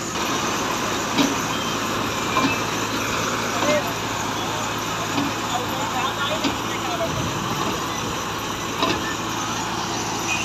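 Mobile clay-brick laying machine running steadily, its engine humming under a dense mechanical clatter, with a few sharper knocks.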